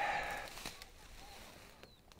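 A brief rustling swish of the action camera being swung around at the start, then quiet open-air background.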